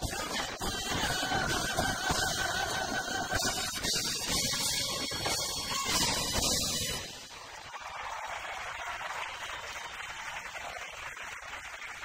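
A live Latin pop band with congas and drum kit plays the final bars of a song. The music stops about seven seconds in and audience applause follows.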